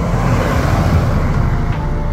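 Ram pickup truck driving past on a paved road, its engine and tyre noise swelling to a peak about a second in and easing off as it goes by.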